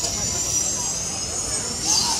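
Spinning pendulum amusement ride running, its machinery giving a steady high-pitched whine that drifts slightly in pitch, under riders' voices, with a louder burst near the end.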